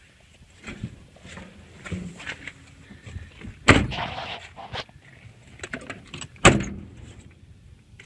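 Steel cab door and steps of a 1996 Chevrolet Kodiak C7500 truck as someone climbs out: a loud bang about four seconds in and a second bang nearly three seconds later, with lighter clicks and knocks between.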